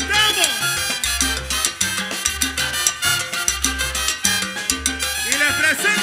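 Live Latin tropical dance orchestra playing an instrumental passage, with a steady repeating bass line under percussion and horns.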